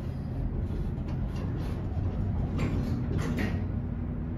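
Center-opening elevator car doors sliding closed over the steady low hum of the car.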